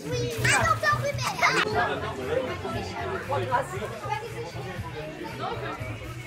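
Children shrieking and shouting excitedly as they play in a swimming pool, with a burst of high-pitched squeals in the first two seconds, then lower voices and chatter.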